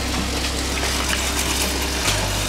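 Supermarket bottle-deposit reverse vending machine running, a steady low motor hum as it takes in and processes returned single-use containers.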